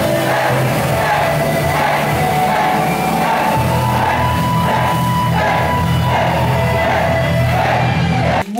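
Live rock music from a band with a singer, loud and steady, with crowd voices mixed in.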